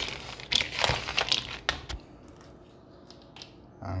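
Shelled peanuts rattling and scraping in a mixing bowl as they are stirred with a spatula to coat them in seasoning: a dense run of small clicks for about two seconds, then only a few faint clicks.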